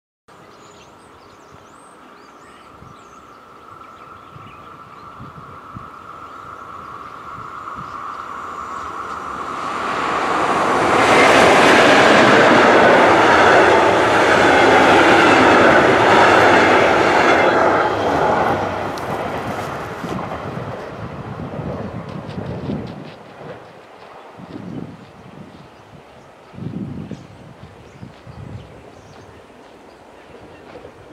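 Electric double-deck regional train passing. Its noise builds for about ten seconds with a steady high hum, is loudest for about seven seconds as the coaches go by, then fades away.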